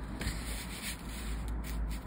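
Cardboard scratch-off lottery tickets being handled and slid across a cloth surface, a rubbing, brushing sound of card on fabric with a few short strokes.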